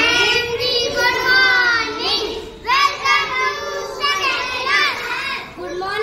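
A young schoolgirl singing into a handheld microphone in a high voice, in phrases with long held notes and brief breaths between them.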